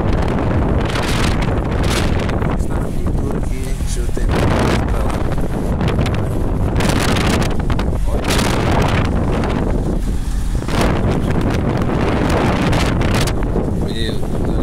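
Storm wind gusting hard across the microphone at an open truck-cab window: a loud, continuous rushing that surges in irregular gusts every second or two.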